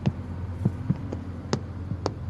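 Footsteps of several men in dress shoes on a hardwood floor: sharp, uneven heel clicks, about six in two seconds, over a steady low hum.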